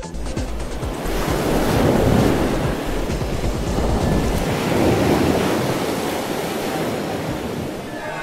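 Ocean surf: waves washing in, swelling and falling back twice.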